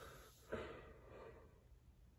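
A faint breathy exhale starting about half a second in and fading over most of a second.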